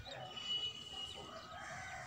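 Faint bird calls, with a thin high whistle lasting most of a second.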